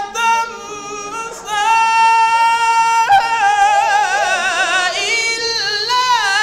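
A man reciting the Qur'an in a melodic, chanted style, holding high notes into a microphone. After a quieter phrase in the first second and a half, he holds one long steady note, then wavers through quick ornamented runs in the second half.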